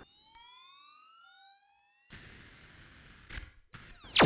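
Make Noise MATHS function generator cycling at audio rate as an oscillator, its tone rising steadily in pitch into a high whine as the rise and fall times are shortened. About two seconds in, the whine gives way to a hiss for about half a second, then the sound drops away to near quiet.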